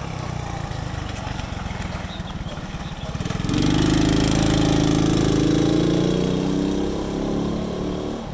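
Small minibike engine passing close by: it is heard approaching, is loudest as the bike goes past about three and a half seconds in, and fades as it rides away.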